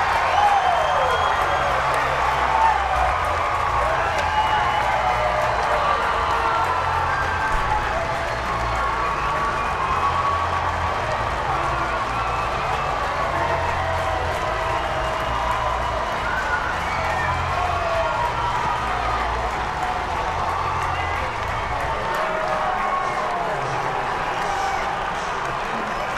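Ballpark crowd cheering and applauding, many voices shouting over one another for the game-ending strikeout that wins a championship.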